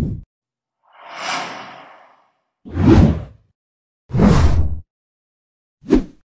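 Intro-animation sound effects: a short low hit, then a whoosh that fades away over about a second, followed by two loud swooshes with a deep low end, and a brief hit at the end, with silence between them.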